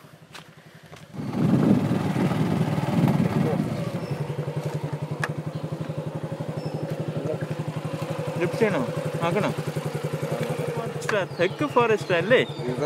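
Motorcycle engine running, coming in loudly about a second in and then settling into a steady, even pulse. Brief voices come in near the end.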